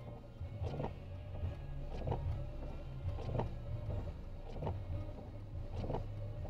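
Inside a car idling at a standstill: a low steady hum with faint ticks about every second and a quarter.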